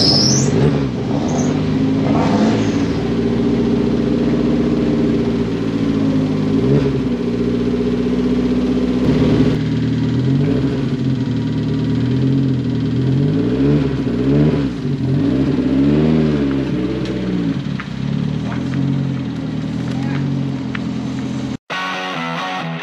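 Mazda MX-5 four-cylinder engine of an MEV Exocet kit car running at idle, with several revs rising and falling in the second half.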